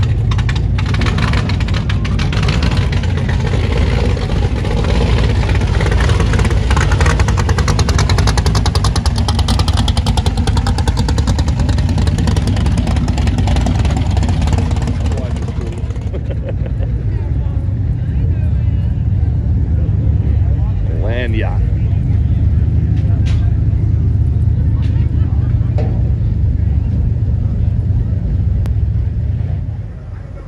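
Rat rod's engine running loud with a rumbling exhaust as it drives off. About halfway through it cuts to a quieter, steady car engine rumble with voices over it.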